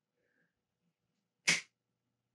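A single sharp finger snap about one and a half seconds in, otherwise quiet room.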